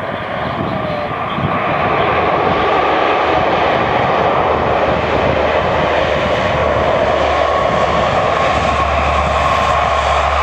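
Four-engine turboprop patrol aircraft, a Lockheed P-3 Orion with Allison T56 engines, taxiing with its propellers turning: a loud, steady engine and propeller sound with a held whine. It builds over the first couple of seconds and then stays level.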